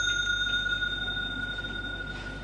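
A bell rings on after a single strike, one clear high tone with fainter upper overtones, fading slowly.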